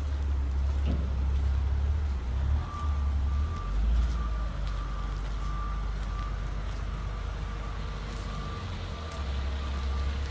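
A vehicle's reversing beeper sounding about twice a second, starting about three seconds in and growing fainter toward the end, over a heavy low rumble of wind on the microphone.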